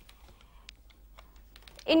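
A few faint, scattered clicks over a low hum in a gap in speech. A voice starts speaking again near the end.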